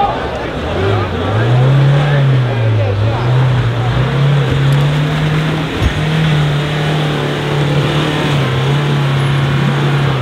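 Volkswagen Amarok pickup's engine revving up about a second in, then held at fairly steady revs with small rises and dips as it crawls through deep mud ruts, easing off slightly near the end. Crowd voices underneath, and one sharp knock a little past halfway.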